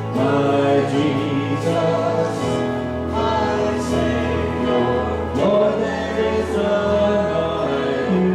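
Live worship band of acoustic guitar, electric guitar, bass and keyboard playing a slow praise song, with voices singing the verse.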